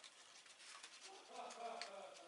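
Small scissors cutting a paper waterslide decal sheet: a few faint, scattered snipping clicks. A faint voice murmurs from a little past halfway.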